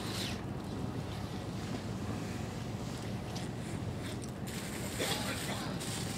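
Steady low outdoor rumble with wind buffeting the microphone, with brief hissy gusts just after the start and again near the end.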